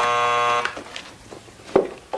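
Door buzzer sounding a steady electric buzz that cuts off abruptly under a second in, followed near the end by a single thump.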